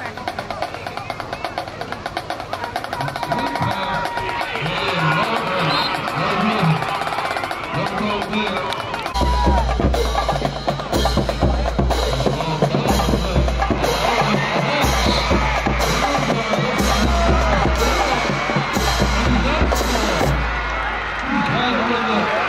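Drumline playing: a fast snare-drum roll, then about nine seconds in the bass drums come in, beating in repeated phrases with short breaks between them, with voices underneath.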